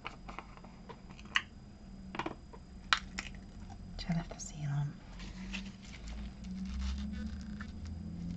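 Handling sounds of a small plastic jar of embossing powder being opened: a few sharp clicks and taps as the lid comes off and is set down, then quieter handling as the powder is poured out onto card.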